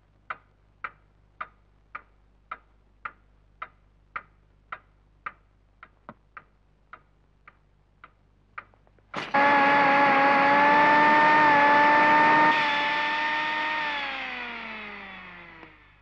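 Drops of water falling in a steady run of about two a second, growing uneven and fainter. About nine seconds in, a sudden loud, sustained pitched screech cuts in, holds for about four seconds, then slides down in pitch as it fades away.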